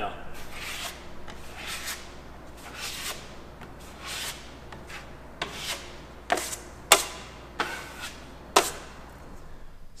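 Steel drywall knife scraping joint compound across screw heads on drywall, laying it on and wiping it off. It comes as a series of short scraping strokes, the later ones sharper.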